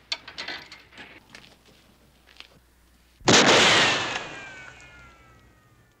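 A single gunshot from a western film's soundtrack about three seconds in: a sudden loud blast with a ringing tail that falls in pitch as it dies away over about two seconds. A few light clicks and knocks come before it.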